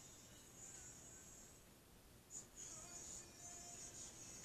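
Near silence: faint room tone with a steady, faint high-pitched hiss.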